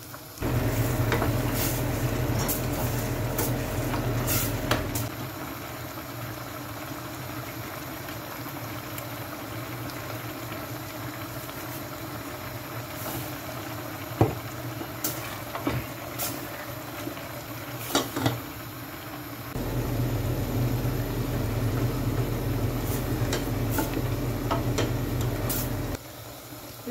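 Chickpea and aubergine curry simmering in a steel pot on a gas hob, stirred with a wooden spoon that knocks against the pot a few times in the middle. A steady low hum sounds at the start and again for the last several seconds.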